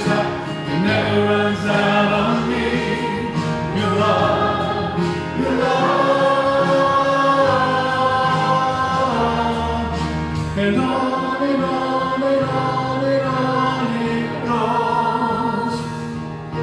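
Church praise team and worship choir singing a contemporary worship song together, held sung notes over a steady band accompaniment.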